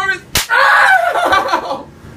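One sharp open-hand slap on a person a third of a second in, followed by loud yelling.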